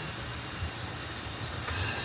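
Steady, even hiss and sizzle of cooking on a gas stovetop: a paratha frying on an iron tawa beside a pan of simmering tea.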